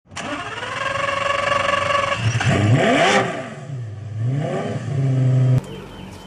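Rapier Superlite SLC supercar's engine held at steady revs, then revved up and let fall twice. The sound cuts off abruptly just before the end.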